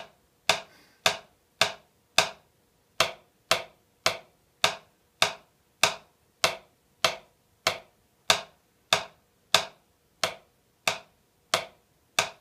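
Wooden Vic Firth 5A drumstick striking a drum practice pad in single, evenly spaced strokes, about two a second, each stroke let rebound off the pad.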